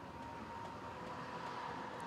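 Faint steady background noise with a thin, held high tone running through it: a quiet ambient bed or room tone.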